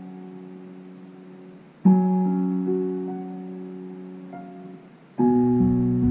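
Digital piano playing slow, sustained chords: one struck about two seconds in and left to ring and fade, then a lower, fuller chord about five seconds in.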